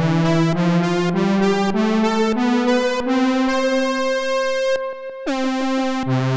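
A Moog Mother-32 and a Moog Mavis analogue synthesizer played together on their button keyboards, their square and pulse-width voices sounding the same notes. The notes step up a scale one at a time, then a long note is held and fades, and a new note comes in about five seconds in.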